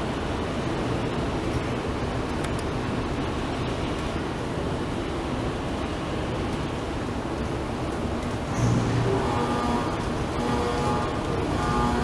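Steady, even background noise of a large underground pedestrian passage. Faint music joins it from about nine seconds in.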